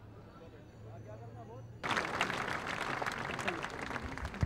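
Faint voices of people gathered outdoors, then a sudden start, about two seconds in, of an audience applauding: many hands clapping at once, much louder than what came before.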